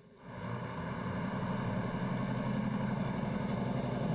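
City street traffic: vehicle engines running with a steady low hum, fading in over the first second and then holding level.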